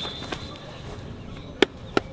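Two sharp slaps about a third of a second apart near the end: hands striking a lineman's chest and pads in a blocking rep. A thin, high, steady tone sounds through the first second.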